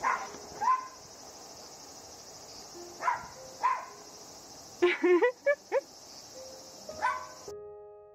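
Small poodle-type dogs yapping in short high yelps, a few spaced apart and a quick run of them about five seconds in, over a steady high drone of cicadas. The drone cuts off shortly before the end as piano music begins.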